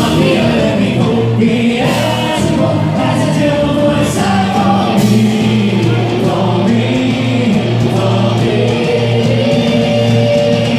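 Live band playing loudly: a male singer with bass guitar and drums.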